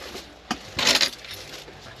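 A sharp click about half a second in, then a brief, loud rattle of small hard objects, like a jingle or clatter.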